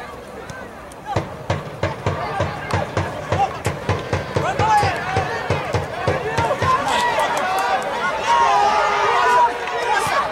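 Soccer field sound: many voices shouting and calling over one another, louder from about halfway through. Under them, in the first part, runs a string of sharp knocks, several a second.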